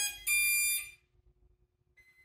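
Two short electronic beeps, a lower tone and then a higher one, within the first second. Then near silence with a faint steady hum.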